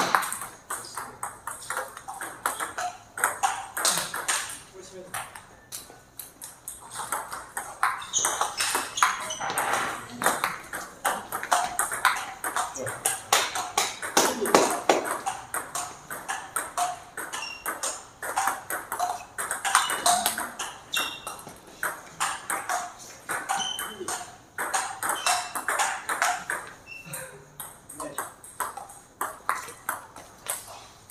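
Table tennis rallies: the ball clicking back and forth between the paddles and the table in quick runs of hits, with short pauses between points.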